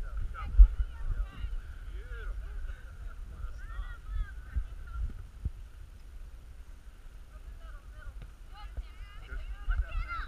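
Wind buffeting the microphone with a low rumble and a sharp bump about half a second in, under faint distant voices calling out.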